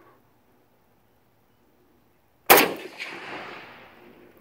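A single rifle shot from an SKS firing a 7.62x39 steel-cased plastic-core training round, sharp and loud, about two and a half seconds in. A fainter crack follows about half a second later as the report echoes away.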